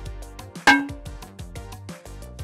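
A hammer dropped from about 40 cm strikes a phone's front glass once, a sharp hit about a third of the way in with a brief ringing after it. Background music with a quick steady beat runs under it.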